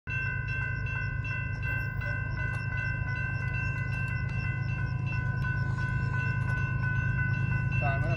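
Railroad grade-crossing warning bell ringing with rapid, evenly spaced strokes as the crossing is activated and its gates come down, over a steady low rumble that grows slowly louder.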